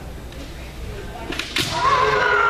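Two sharp cracks of bamboo shinai striking kendo armour near the end, followed at once by a loud, held shout from the fencers (kiai).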